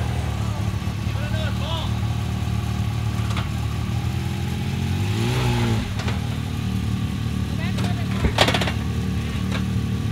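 Side-by-side UTV engine running steadily at low revs under load while crawling up a rock ledge, with a slight swell in throttle around the middle. A single sharp knock about eight seconds in.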